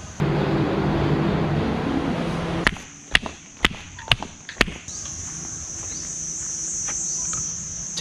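Insects shrilling steadily at one high pitch, louder from about halfway. For the first two and a half seconds a loud rushing noise with a low hum covers them. Then comes a run of sharp slaps of flip-flop footsteps on a paved path, about two a second.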